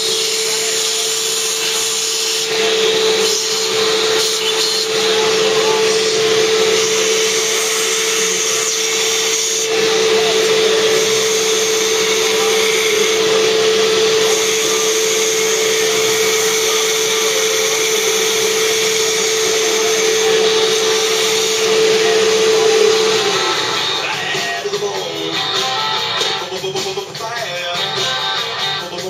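Electric drill running steadily, its bit cutting holes into the steel baffle cap of a stock motorcycle muffler, holding one steady pitch. The drill stops about 23 seconds in.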